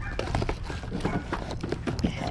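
Boxed toy trains in plastic-windowed packaging being handled and packed into a tote: a quick, irregular run of light clacks and knocks.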